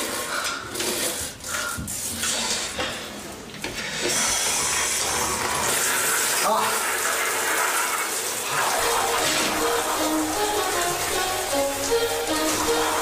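Shower water running steadily, starting about four seconds in after some knocks and handling sounds, with music coming in over it near the end.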